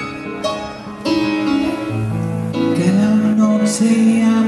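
Live pop-rock music from a keyboard and guitar duo, played through PA speakers. It gets louder about a second in.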